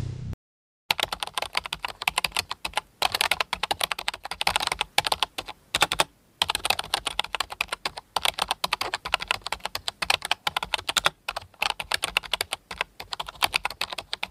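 Computer-keyboard typing sound effect: a fast run of key clicks that starts about a second in and pauses briefly a few times.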